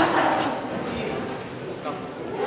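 Men's voices calling out in a large, echoing sports hall, with one sharp smack right at the start, a boxing punch landing.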